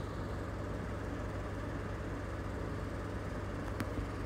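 Steady low background hum with an even noise underneath, and a single brief click near the end.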